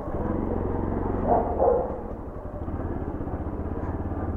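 Bajaj Pulsar NS200 single-cylinder engine running steadily at low speed, its even firing pulses heard from the rider's seat.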